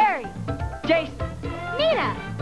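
Upbeat TV theme music with young cast members' voices calling out one after another, each call swooping up and down in pitch.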